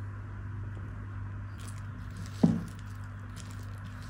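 Baking powder tipped from a small dish onto batter in a glass bowl: a faint soft rustle, with a single short knock about two and a half seconds in, over a steady low hum.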